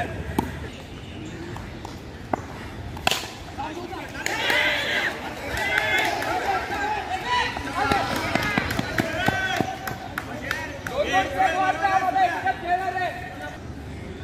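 Several men's voices calling out and chattering in the open, with one sharp knock about three seconds in.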